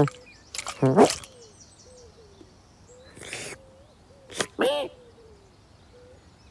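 A cartoon cat's short voiced grunts and mews from a human voice actor, with a brief spray-bottle squirt about three seconds in and a click just before the second grunt. Faint repeated bird calls sound in the background.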